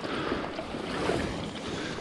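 Shallow stream water sloshing and splashing unevenly as a hand dip net is pushed and lifted through it.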